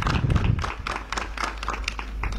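Audience clapping in a pause of the speech: many separate, irregular hand claps, each standing out on its own.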